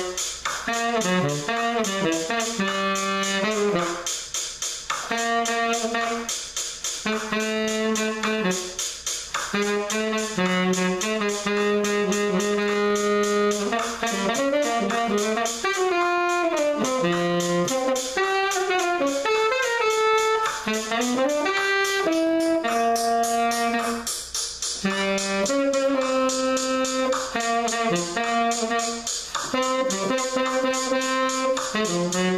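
Saxophone playing a melody of held and moving notes in phrases with short breaths between them, over a steady rhythmic accompaniment.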